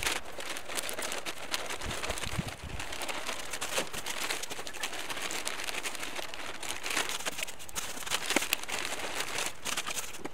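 Large plastic bag of potting soil crinkling and crackling as it is handled and tipped, with soil pouring into a cut-open plastic milk jug.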